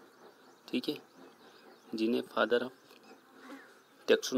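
Mostly quiet room with two short stretches of the teacher's voice, one brief near a second in and a longer one around two seconds in, that the transcript did not catch.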